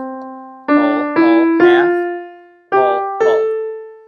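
Piano keyboard playing the upper half of an ascending A natural minor scale, one note at a time: five notes rising in pitch, the top A held and left to fade out near the end.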